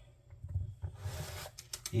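Dough scraper cutting through rolled sweet-bread dough and scraping across the countertop: a short rasping scrape about a second in, followed by a few light clicks.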